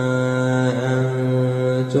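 A man chanting Quranic recitation in the melodic tajwid style, holding one long drawn-out vowel on a steady pitch with slight wavers. Near the end it breaks briefly as the next word begins.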